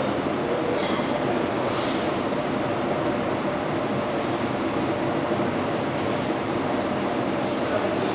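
Steady hum of hall noise with faint background voices.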